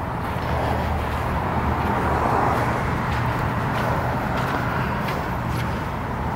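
Steady low rumble of a motor vehicle, swelling a little through the middle and easing off toward the end.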